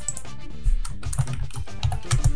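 A few keystrokes on a computer keyboard as a short word is typed in, over quiet background music.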